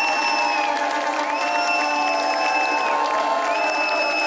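A live pop song playing over a cheering, clapping crowd, with a high held tone in the music that swoops up and repeats about every two seconds.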